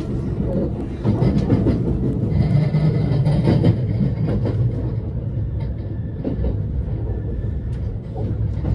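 Cabin noise inside a JR West 289 series electric train running into a station: a steady wheel-and-rail rumble with light clicks. A faint high tone sits over the rumble from about two to five seconds in.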